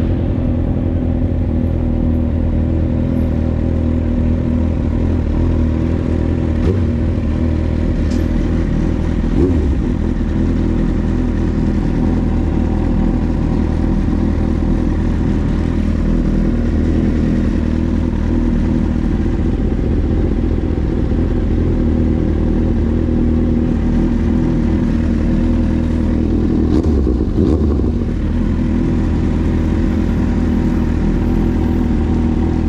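Kawasaki Z750's inline-four engine with an SC-Project aftermarket exhaust, running at low, steady revs.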